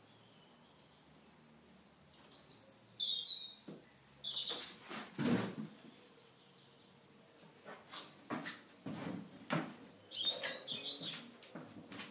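Birds chirping in short bursts of high calls. Several short knocks come through, the loudest about five seconds in, from small objects being set down on a plastic table.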